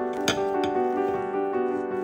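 Background piano music, sustained notes changing in steps, with one short click about a third of a second in.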